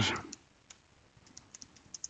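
Light keystrokes on a computer keyboard: a scatter of faint, separate clicks as a short command is typed, following the tail of a spoken word.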